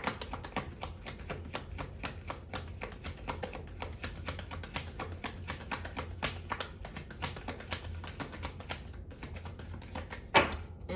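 A tarot deck being shuffled by hand: a steady run of light card clicks and flicks, several a second, over a low steady hum.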